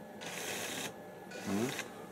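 The autopilot's small electric rudder-drive motor runs in a short burst of under a second as it reacts to the compass being turned, followed by a brief hum from a voice.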